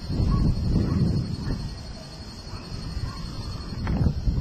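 Handling and movement noise from a handheld camera carried through scrub: an uneven low rumble, loudest in the first second and a half, then weaker.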